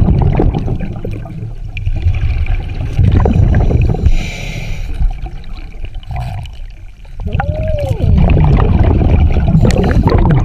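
Scuba diver breathing through a regulator, recorded underwater: loud bubbling rumbles of exhaled air, with a brief hissing inhale about four seconds in and a long bubbling exhale near the end.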